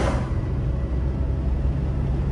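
Car driving on a snow-covered road, heard from inside: a steady low rumble of engine and tyres, with a hiss that is strongest at the start and eases within the first half second.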